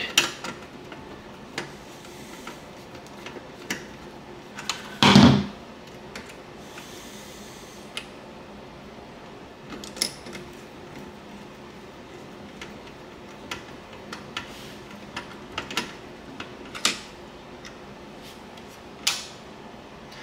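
Scattered small clicks and scrapes of a screwdriver working a screw terminal and handling the wires, with one louder knock about five seconds in.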